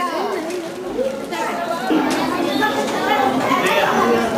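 Several people talking over one another: mixed, overlapping chatter.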